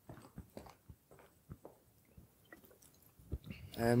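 Faint gulping and swallowing of a drink from a bottle, picked up close by a headset microphone as a scatter of soft clicks. A voice starts speaking near the end.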